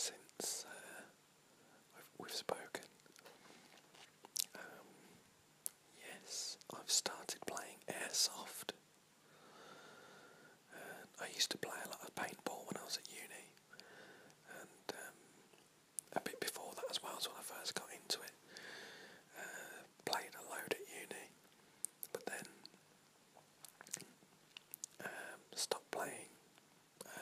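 A man whispering in short phrases with brief pauses between them.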